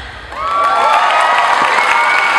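Audience cheering and screaming with applause, swelling up about half a second in, with high held screams over the clapping.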